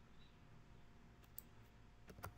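Near silence, with a few faint computer-keyboard key clicks in the second half as text is deleted and retyped.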